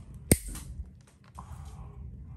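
Stainless steel toenail nippers cutting through a thick, diseased toenail: one sharp clip about a third of a second in, then a few fainter clicks of the nippers.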